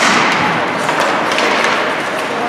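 Ice hockey faceoff: a sharp clack of sticks on the puck drop, then a dense scraping hiss of skate blades on ice, peppered with stick taps and knocks.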